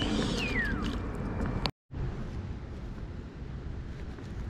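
Steady low rumbling outdoor background noise, like wind on the microphone, with a short falling whistle-like call in the first second. The sound cuts out completely for a moment just under two seconds in, then the low rumble carries on.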